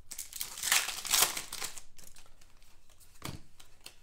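A trading-card pack wrapper being torn open and crinkled by hand, heaviest in the first two seconds and thinning out after, with a short sharp tick about three seconds in.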